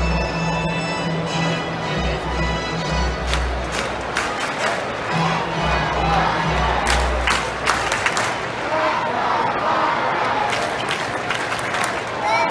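Ballpark organ playing a chant in held bass notes while a stadium crowd claps and cheers along. The organ stops about two-thirds of the way through, leaving the crowd noise.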